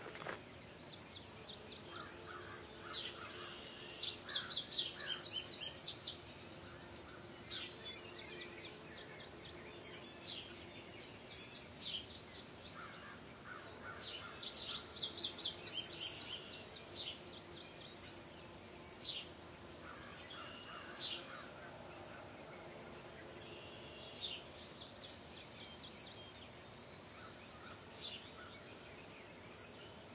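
Woodland ambience: a steady high-pitched insect drone, with two bouts of rapid bird chattering about four and fourteen seconds in and a few scattered single chirps.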